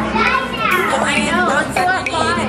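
Young children's voices chattering and calling out, high-pitched, with no clear words.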